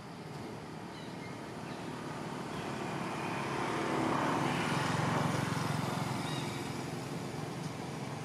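A passing vehicle: a steady noise that swells to a peak about halfway through, then fades.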